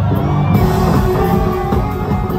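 A large live band with horns, keyboards and drums playing, heard from within the audience; the sound gets brighter and a little louder about half a second in.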